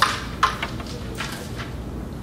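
A carrom striker flicked across the board, a sharp click at the start, a second clack about half a second later, and a few lighter clicks of pieces knocking together. A steady low hum runs underneath.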